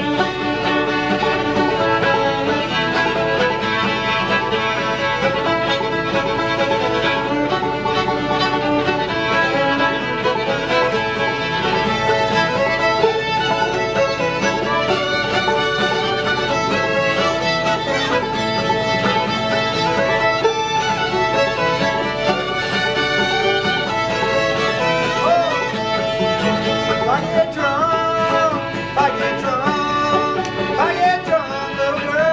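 Old-time string band playing an instrumental passage: two fiddles carrying the tune over banjo and guitar accompaniment.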